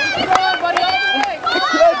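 Spectators shouting and cheering swimmers on, several raised voices overlapping, with a few short sharp sounds among them.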